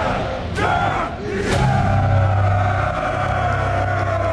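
A crowd of men yelling and whooping. There are two sharp hits in the first second and a half, then one long held yell.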